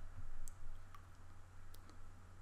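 A computer mouse making a few faint, sharp clicks, about four spread through two seconds, over a low steady hum.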